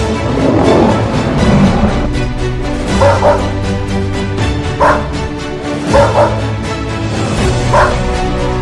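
Background music with a dog barking over it in short bursts, about every second and a half from about three seconds in, some of them double barks.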